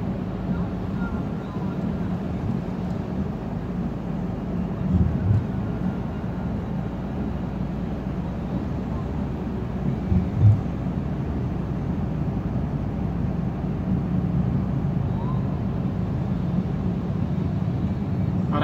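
Steady cabin noise of a small petrol car driving slowly on a wet road in the rain: a low engine rumble with tyre and rain hiss. Two short low thumps come about five and ten seconds in.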